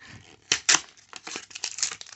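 Foil Pokémon booster pack wrapper and cards being handled: sharp crinkling and crackling of the foil, with two louder crackles a little after half a second in and then a run of smaller ones.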